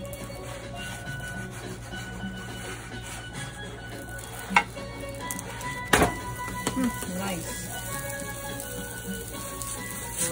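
Roti cooking on a hot iron tawa with a faint sizzle, and two sharp knocks of the flat wooden paddle against the tawa as the roti is turned over, about four and a half and six seconds in. Faint music plays underneath.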